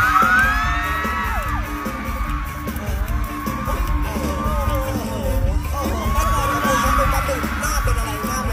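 Pop music with a steady beat playing over an audience shrieking and cheering; the shrieks are loudest at the start and again near the end.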